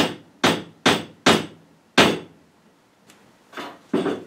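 A run of sharp knocks in the van's interior, five in the first two seconds at about two a second, then two fainter ones near the end.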